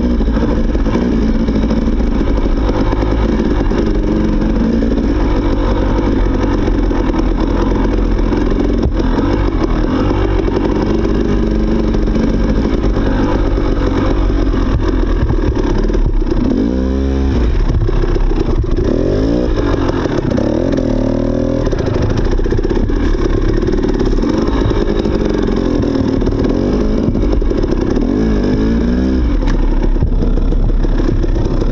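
Dirt bike engine running at low trail speed in the low gears, the pitch rising and falling several times as the throttle is opened and closed and the gears change, most clearly around the middle and near the end.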